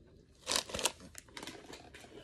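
Plastic snack bag crinkling as it is handled: a few sharp crinkles about half a second in, then lighter rustling.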